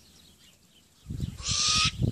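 Hybrid great grey owl × brown wood owl giving a harsh hissing call about half a second long, starting about a second and a half in, preceded by low rustling thumps.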